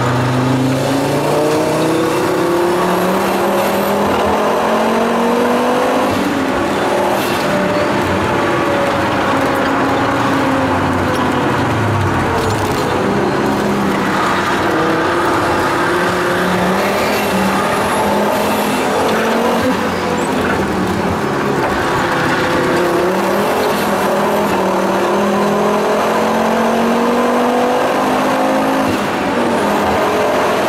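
Interior sound of a heavily tuned Volvo 850 T5-R at speed: its turbocharged inline five-cylinder engine climbs and falls in pitch again and again through gear changes and corners, over constant road and wind noise in the cabin.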